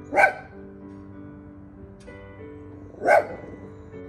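A Shih Tzu barking twice, single sharp barks about three seconds apart.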